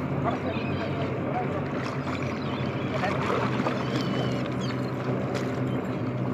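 A steady low engine hum, its tones unchanging throughout, over a wash of sea and wind noise.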